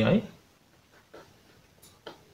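Marker pen writing on a whiteboard: faint short strokes, with a brief high squeak of the tip near the end.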